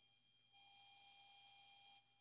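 Near silence: room tone with a faint, steady high-pitched electronic whine made of a few held tones, a little louder from about half a second in.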